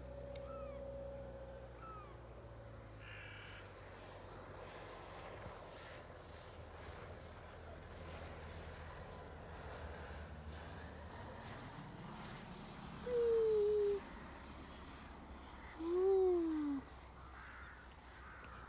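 Two drawn-out calls from a bird, each about a second long and about three seconds apart, near the end, over a faint steady outdoor background.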